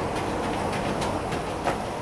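Steady outdoor background noise with a few soft short clicks, about a second in and again near the end.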